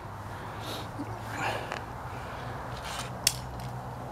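Faint shuffling and handling noises, then one short sharp click about three seconds in as a small copper-wound coil salvaged from the microwave is tossed onto the pile of scrap parts.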